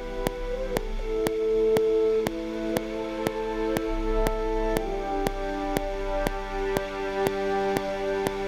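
Sampled orchestral French horns (East West Quantum Leap Symphonic Orchestra, portato) played from a keyboard, holding slow sustained chords that change about a second in and again near five seconds. A sharp metronome click ticks twice a second underneath.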